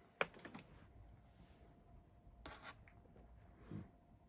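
Faint taps and brushes of fingertips on an iPad's glass touchscreen: a sharp click just after the start, a few soft ones after it, two more midway, and a soft low thump near the end.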